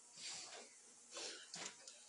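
Bible pages being turned: three short, faint rustles, two of them close together past the middle.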